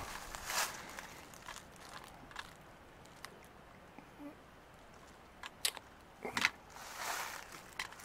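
Footsteps on dry leaf litter and twigs on a forest floor: scattered faint crackles and snaps, a lull for a couple of seconds in the middle, then a cluster of sharper twig snaps past the halfway point.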